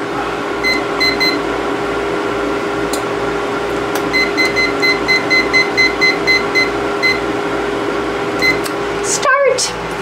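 Digital kitchen timer beeping once per button press as its minutes are set. There are three quick beeps about a second in, then a run of about a dozen beeps a little over two a second, and one more beep near the end.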